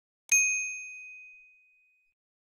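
A single bright ding struck about a third of a second in, ringing out and dying away over about a second and a half: a notification-bell chime sound effect.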